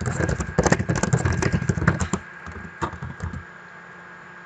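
Typing on a computer keyboard: a fast run of key clicks that thins to a few scattered keystrokes after about two seconds and stops shortly before the end.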